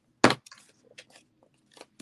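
A single sharp knock about a quarter second in, then faint paper rustling and small scattered clicks as glued cardstock is folded and pressed down by hand.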